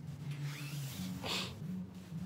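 Jacket fabric rubbing and rustling against the phone's microphone, with a brief louder rub about a second and a quarter in, over a steady low hum.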